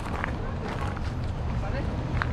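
Footsteps on a gravel path, with irregular small crunches, over a steady low rumble of wind on the microphone.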